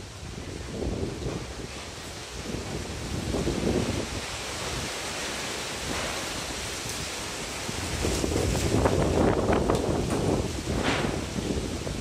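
Storm wind gusting through trees and palms, with wind buffeting the microphone. The gusts swell and ease, and are loudest from about eight seconds in.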